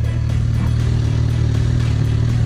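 Sport motorcycle's engine idling with a steady low hum, under background music.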